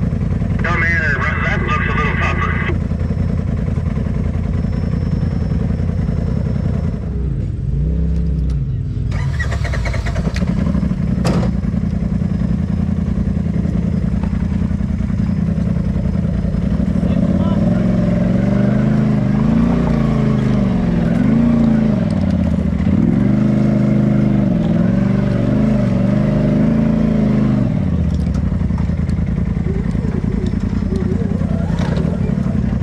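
Polaris RZR side-by-side engine running at crawling pace over rock ledges, with a steady low drone. From about halfway through it revs up and down in short repeated pulses as the machine works over the rocks. There is a single sharp click or clank about a third of the way in.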